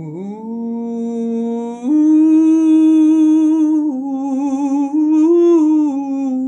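A mezzo-soprano woman's voice singing a slow, wordless improvised melody over a soft steady drone chord. She holds long notes, sliding up at the start and stepping up to a louder held note about two seconds in. She then steps down, rises to a peak, and falls again near the end.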